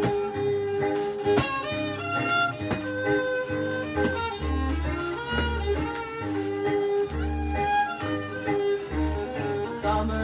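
Hillbilly country song played back from an acetate record on a turntable: an instrumental passage with fiddle leading over guitar accompaniment and a steady pulsing beat.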